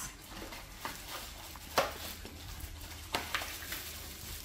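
Cardboard gift box being opened and tissue paper rustling, with a few short sharp clicks, the loudest a little under two seconds in.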